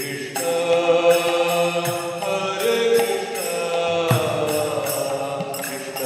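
Devotional chanting in a kirtan, accompanied by small brass hand cymbals (kartals) struck in a steady beat and strokes on a mridanga drum.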